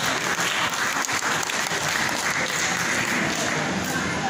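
Audience applauding in a hall, with dense clapping throughout.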